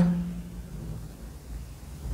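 A woman's voice trails off at the start, followed by quiet room tone with a low, steady hum.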